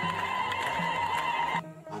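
Ethiopian Orthodox mezmur (hymn) music: a high, wavering held note over a low, repeating bass line, which cuts off suddenly about a second and a half in.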